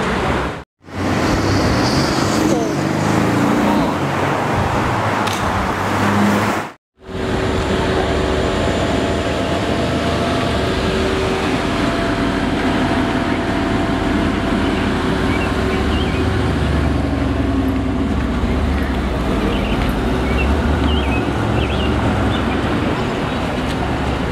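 Mercedes-AMG GT R Pro's twin-turbo V8 running at low speed among city street traffic. The sound cuts out briefly twice in the first seven seconds.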